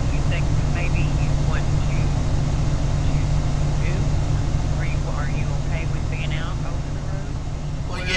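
A steady low rumble, heard as noise on a phone line, with a faint, broken voice speaking through it.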